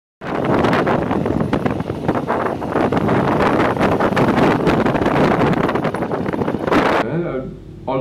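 Wind buffeting the microphone of a camera riding on a moving motorbike: a loud, rough, fluttering rush that cuts off suddenly about seven seconds in.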